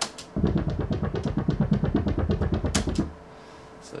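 Albino 3 software synthesizer playing a deep bass note with its filter cutoff swept by an LFO synced to 1/16, giving a fast, even dubstep wobble. It cuts off suddenly about three seconds in.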